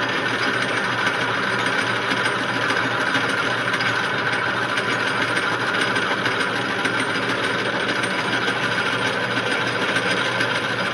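Metal lathe running steadily, turning a five-inch metal pulley blank between centers while the cutting tool takes a light cleanup pass along it.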